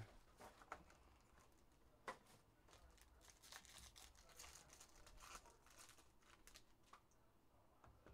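Faint crinkling and tearing of a foil trading-card pack wrapper being opened by hand, with scattered light clicks and a sharper click about two seconds in.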